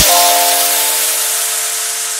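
Future house track at a breakdown: the beat and bass cut out, leaving a held synth chord under a white-noise wash that slowly fades.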